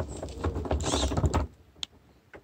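Close crackling and rustling over a low rumble, cutting off abruptly about one and a half seconds in; a single sharp click follows.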